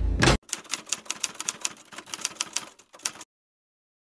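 Typing sound effect: a quick, irregular run of key clicks, several a second, that stops abruptly about three seconds in. It follows a brief tail of film soundtrack that cuts off a moment in.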